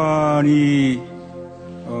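A man's voice holding one long 'uhh' with a slowly falling pitch for about a second, the hesitation before an answer, over soft background music.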